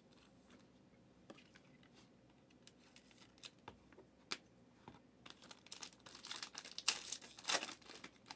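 Foil wrapper of a trading-card pack crinkling and tearing as it is opened, getting denser and louder over the last three seconds. A few light clicks and taps of card handling come before it.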